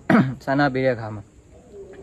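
A man speaking in a calm, level voice, breaking off into a short pause a little over a second in.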